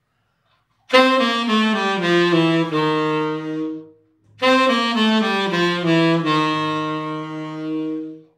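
Tenor saxophone playing the G7 dominant bebop scale downward from D, seven stepwise notes including the chromatic passing note between G and F, ending on a held F. The phrase is played twice, with a short breath between.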